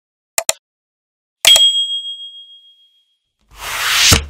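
Animated subscribe-button sound effects: a quick double mouse click, then a single bright bell ding that rings out and fades over about a second and a half, and a whoosh building near the end.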